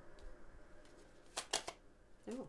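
A tarot deck being shuffled by hand, quiet at first, then three quick sharp card snaps about a second and a half in.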